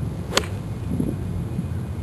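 A golf wedge striking the ball on a full pitch shot: one sharp click about a third of a second in.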